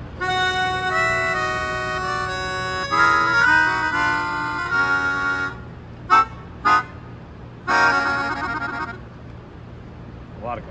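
A Yamaha P-37D melodica being played. Its reeds are blown through the mouthpiece in held notes and chords for about five seconds, then two short chord stabs, then one last chord with a wavering tone. The player calls the instrument not the greatest in tune, drifting further out as it goes lower.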